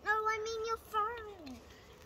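A young child's wordless sung vocalising: one steady held note, then a shorter wavering note that slides down and fades out.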